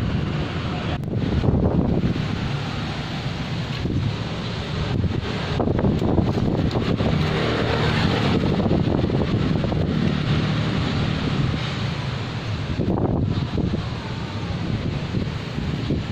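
Wind rumbling on the microphone: a steady, fluctuating noise heaviest in the low range, with a few brief dips.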